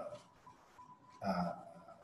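Speech only: a man's voice says one drawn-out "a" about a second in, between quiet pauses with faint room tone.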